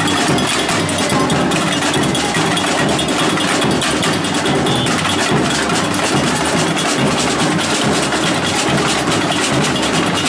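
Samba drum band playing a batucada rhythm on marching drums: a dense, steady wall of drumbeats.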